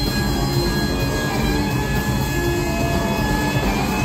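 Live rock band playing loudly in an arena: distorted electric guitar holding long sustained high notes over bass guitar and drums, with pitch bends near the end.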